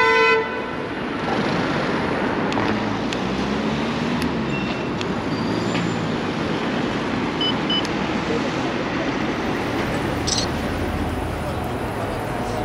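City street traffic noise: a steady wash of passing cars with a few faint clicks. A music track cuts off just before half a second in.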